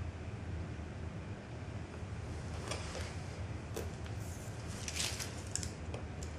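Craft knife scratching over Monokote film on glass as the film is trimmed: a handful of short, scratchy strokes in the second half, the loudest about five seconds in, over a steady low hum.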